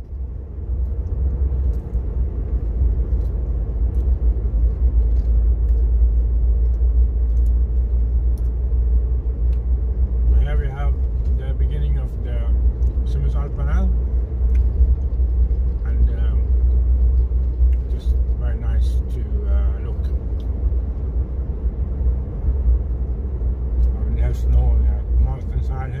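A car driving along a road, heard from inside the cabin: a steady, loud low rumble of engine and tyre noise.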